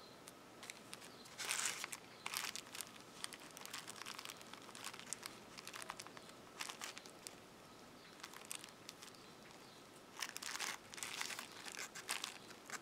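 Faint handling noise: the plastic wrapper of a yarn skein crinkling and crocheted cotton rubbing under the fingers. It comes in scattered short bursts, loudest about one and a half seconds in and again around ten to eleven seconds in.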